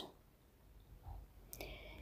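Near silence, with a faint click about a second in and another faint, brief click-like sound near the end.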